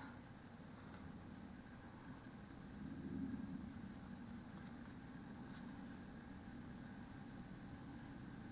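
Quiet room tone: a faint, steady low hum, swelling slightly about three seconds in.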